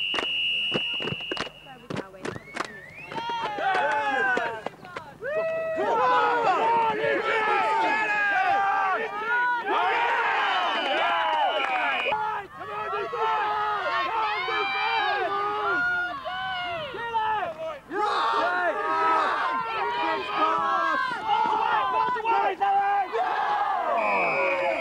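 A referee's whistle blown for about two seconds at the start, with a few sharp clicks, then many voices shouting and calling at once as players and sideline react to the play. A second whistle blast comes about ten seconds in.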